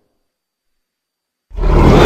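Silence, then about one and a half seconds in a loud, deep dinosaur roar sound effect starts suddenly and carries on.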